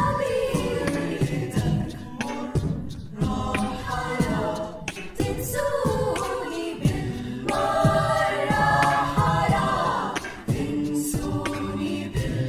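Mixed-voice a cappella choir singing an Arabic song in harmony, men's and women's voices together, over sharp percussive hits from beatboxed vocal percussion.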